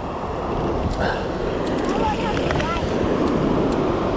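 Wind buffeting the microphone over the roar of surf breaking on the beach, a steady rushing noise that grows slightly louder.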